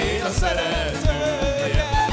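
Live band playing a fast csárdás with a quick, steady bass-and-drum beat, and a voice singing over it.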